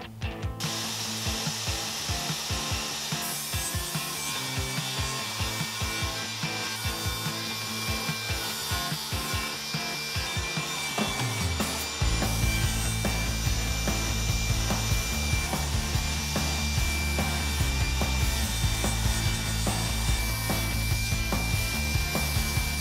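DeWalt table saw ripping three-quarter-inch birch plywood to width, its blade cutting steadily with a constant high whine.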